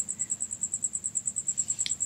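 Insect chirping: a high, steady trill of evenly spaced pulses, about a dozen a second.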